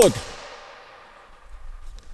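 The end of a man's spoken phrase echoing and dying away in a large sports hall, followed by a few faint low thuds near the end.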